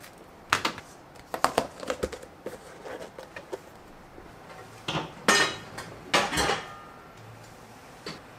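Kitchen handling sounds: light clicks and knocks, then two louder clatters about five and six seconds in, as a plastic food container and cookware are handled on the counter.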